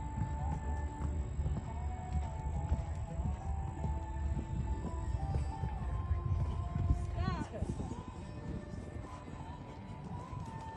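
Hoofbeats of a show-jumping horse cantering on sand arena footing over background music, with a horse's whinny once, about seven seconds in.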